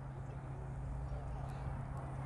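A pause in the talk: a steady low hum under faint background noise, with a couple of faint clicks near the end.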